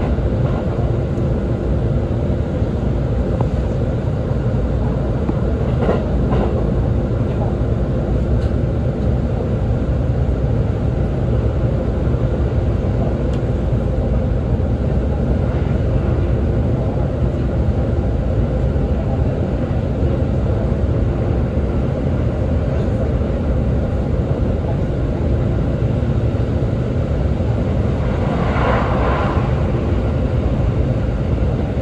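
Cabin running noise of an E531-series electric train at speed: a steady low rumble of wheels on rail with a faint steady hum. A brief higher-pitched sound comes near the end.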